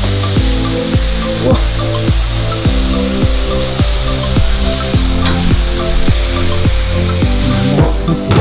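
Ribeye steaks sizzling on a gas grill, a steady frying hiss, under background electronic music with a steady beat.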